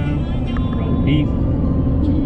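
Steady low rumble of tyre and road noise inside a car at highway speed.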